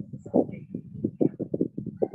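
Background noise picked up by a participant's open microphone on a video call: a fast, even run of short pulses, about seven a second.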